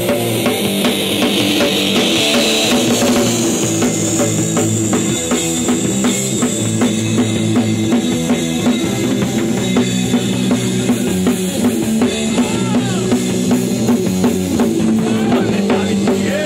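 Punk rock band playing live: an instrumental passage with a fast, steady drum-kit beat of bass drum and snare under bass and guitar, loud throughout.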